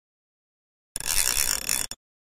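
Intro sound effect over a logo card: about a second of harsh, hissy mechanical noise, like a ratchet or gears. It starts about a second in and cuts off abruptly.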